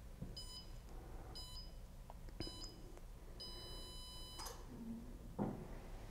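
Sole F89 treadmill console beeping its start countdown: three short high beeps about a second apart, then one longer beep, before the belt starts. A soft thump follows near the end.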